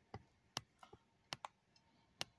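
Small sharp clicks from a pen and a handheld device being handled, about six in two seconds, two of them coming in quick pairs.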